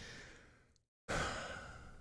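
A man's sigh: one noisy out-breath starting about a second in and fading away.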